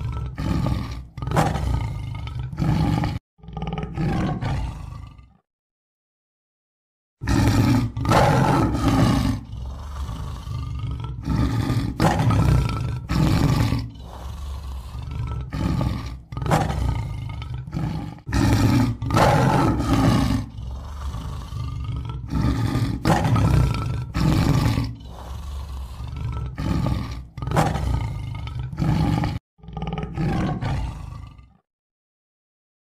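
Big-cat roaring: a long run of loud, short roars in quick succession, broken once by a clean cut to silence about five seconds in.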